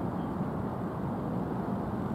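Steady low rumble of outdoor background noise, even and unchanging, with no distinct events.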